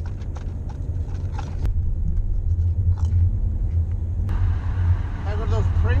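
Steady low rumble of a moving car heard from inside the cabin, with a few sharp clicks in the first two seconds. The road noise grows brighter and louder about four seconds in.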